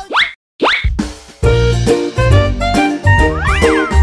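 Upbeat children's background music with cartoon sound effects. Two quick rising whistle slides come at the start, and the music with a steady beat comes in about a second in.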